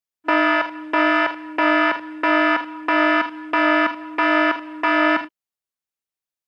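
An electronic alarm or buzzer tone at one unchanging pitch, pulsing louder and softer eight times, about one and a half pulses a second, then cutting off suddenly about five seconds in.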